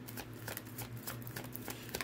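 Tarot deck being shuffled by hand: a quick, irregular run of soft card clicks.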